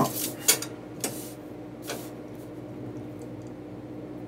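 A plastic drafting triangle and steel rule being handled and slid on paper: a short scrape at the start, a sharp click about half a second in, a brief sliding rasp about a second in and a light tap near two seconds, over a steady low hum.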